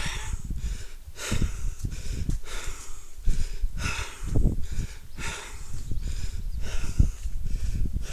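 A man's heavy breathing right at a phone's microphone as he walks, about one noisy breath a second, with handling bumps and thumps from the phone, the strongest near the end.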